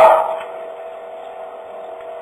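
A man's speaking voice trails off at the start, followed by a pause filled with a faint, steady tone and hiss from the recording.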